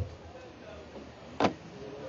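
A pause in speech with low background hum, broken by one short sharp click about one and a half seconds in.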